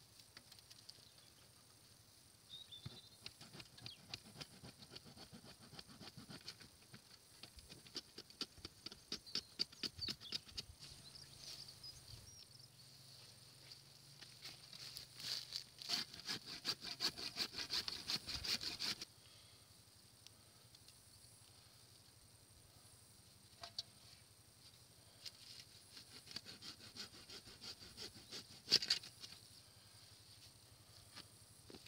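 Old, blunted handsaw rasping in quick strokes through oak roots and soil, with the scrape and crunch of earth. The busiest, loudest run of strokes comes a little past the middle and stops suddenly, followed by a lull and then a few scattered strokes near the end.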